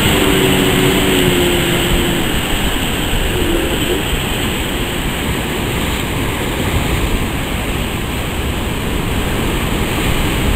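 Steady rushing of breaking surf over a river bar, with wind buffeting the microphone. A motor's hum fades out in the first two seconds.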